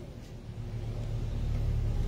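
A low rumble that builds gradually louder, with no speech over it.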